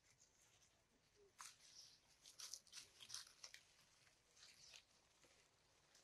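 Near silence with faint, scattered crackles and rustles of dry leaf litter, thickest in the middle of the stretch.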